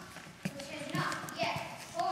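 A young actor's voice speaking stage lines in a large hall, with a few sharp knocks among the words.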